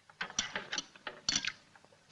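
Metal spoons clinking and scraping against soup plates as two people eat, a run of quick light clicks in the first second and a half.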